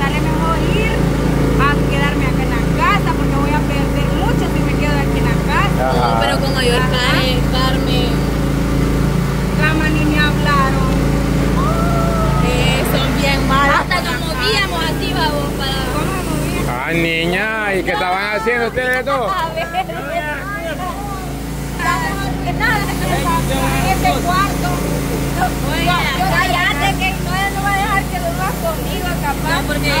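People talking in Spanish over a steady low machine hum that runs without a break.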